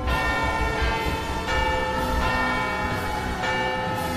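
Bells ringing, a new strike about every three-quarters of a second, each ringing on under the next, over a low rumble.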